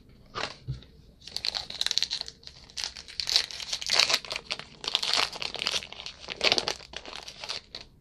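A Topps Heritage baseball card pack wrapper being torn open and crinkled by hand, a run of irregular crackles from about a second in until just before the end.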